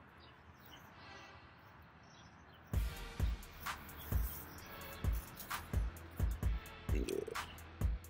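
A bare hand patting and pressing loose garden soil: after a quiet start, a run of irregular dull thumps begins about three seconds in, one or two a second.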